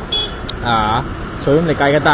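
A man's voice speaking in short bits over the steady noise of road traffic.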